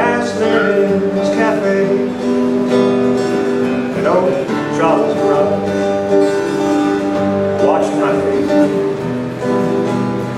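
Acoustic guitar strumming held chords in an instrumental passage of a folk song, with a melodic line that glides up in pitch several times over it.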